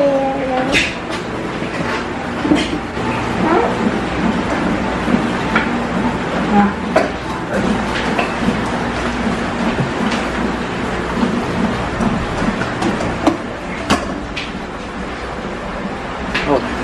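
Kitchen clatter: a metal spoon knocking and scraping in a rice cooker's inner pot and bowls, a scattered series of sharp clinks over a steady background noise.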